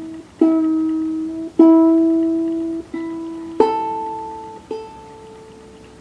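21-inch ukulele being tuned: open strings plucked one at a time, five single notes that each ring out and fade. Three are on one lower string, then two on a higher string.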